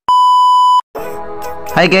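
A single steady high-pitched beep, the test tone that goes with TV colour bars, lasting just under a second and cutting off suddenly. Background music comes in at about one second, and a man's voice starts near the end.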